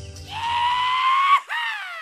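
A high-pitched "yee-haw" holler: a long, slightly rising "yee" lasting about a second, a brief break, then a falling "haw" that trails off. The tail of the band's music fades out underneath near the start.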